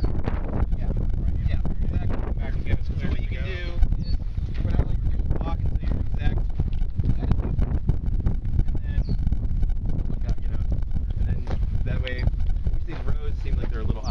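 Wind buffeting the microphone, a constant low rumble, with several people talking indistinctly in the background.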